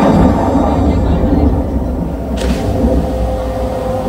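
A loud, deep rumbling sound effect from a stage show's loudspeakers as the magic mirror is summoned, with a short rushing swoosh about two and a half seconds in.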